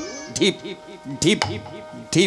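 A man's voice making a quick run of short, arching vocal sounds, about four or five a second, over a steady held tone from the accompanying instrument.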